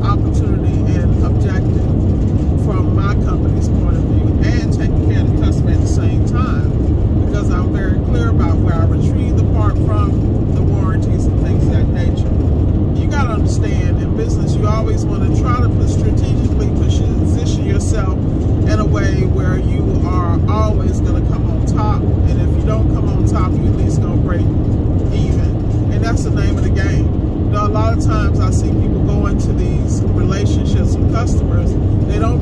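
Steady low road and engine rumble heard from inside a car cruising at highway speed, with a voice talking faintly over it.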